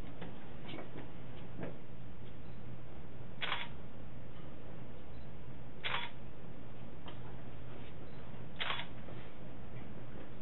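Camera shutter clicking three times, about two and a half seconds apart, over a steady low hum.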